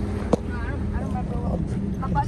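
Car driving slowly on a rough dirt road, heard from inside the cabin: a steady low engine and road drone with a constant hum, and one sharp knock about a third of a second in.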